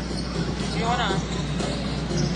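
Basketball arena game sound: crowd noise with music playing and a ball bouncing on the court. A short wavering high tone cuts through about a second in.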